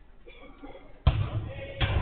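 A football struck hard: two sharp impacts about three-quarters of a second apart, a shot and then the ball hitting the goal end of a fenced five-a-side pitch, each followed by a rattling rumble.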